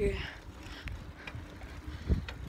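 Low wind rumble and handling noise on a phone's microphone, held while riding a bicycle on a paved road, with a faint click a little under a second in.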